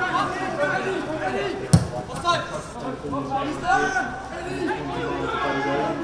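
Several voices talking over one another. There is a single sharp thump about two seconds in and a laugh near the end.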